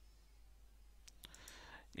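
Near silence with a few faint, sharp clicks past the middle, followed by a faint hiss just before speech.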